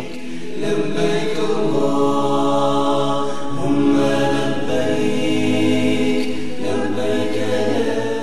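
Unaccompanied vocal chanting in long, held notes, with no instruments.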